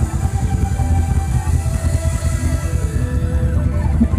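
Loud live ramwong dance music from a band over loudspeakers, with a heavy, steady bass.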